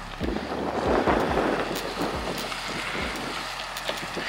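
Wind buffeting the microphone in uneven gusts, heard as a rushing noise with repeated low thumps.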